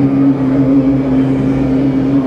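A low vocal drone hummed or chanted steadily on one pitch, part of a ritual rain incantation.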